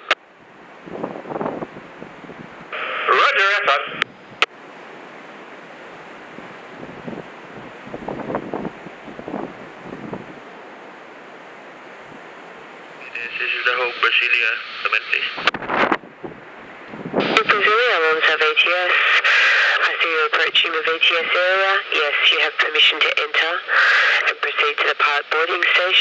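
Marine VHF radio traffic on the pilots' channel, heard through a radio speaker. Short bursts of thin voice come about three and thirteen seconds in, then steady talk from about seventeen seconds on, with a constant radio hiss in the gaps. Wind gusts buffet the microphone now and then.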